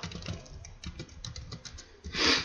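Typing on a computer keyboard: a run of quick, light, irregular key clicks.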